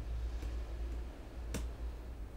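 Key presses on a computer keyboard: a faint click about half a second in and a sharper one around a second and a half in, over a low steady hum.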